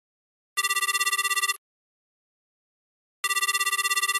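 Telephone ringing: two rings about a second long, each a loud, fast-fluttering tone, the second starting about two and a half seconds after the first.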